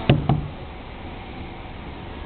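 Two quick knocks on a hollow plastic playground slide, about a fifth of a second apart near the start, as a climbing toddler's hands slap its surface.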